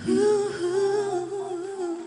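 A woman's voice holding one long closing note of a song with a slight waver, over a low sustained backing tone that fades out near the end.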